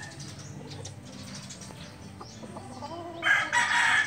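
Faint low sounds for the first three seconds, then a rooster crows loudly, starting a little after three seconds in.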